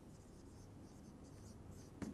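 Faint strokes of a dry-erase marker on a whiteboard, several short strokes as a word is written.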